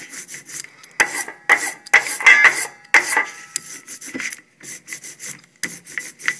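Rubber brayer rolled back and forth over a freshly inked printing block: a tacky, rasping rub with each stroke, several strokes about half a second apart, growing fainter after about four seconds. The ink is being rolled out to an even, velvet texture before printing.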